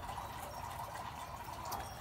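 Faint, steady outdoor background noise with a few light clicks.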